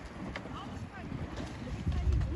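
Wind buffeting the microphone in an uneven low rumble, with faint distant voices.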